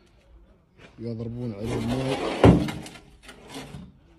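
A man's voice speaking for about a second and a half, followed about halfway through by one short, sharp knock.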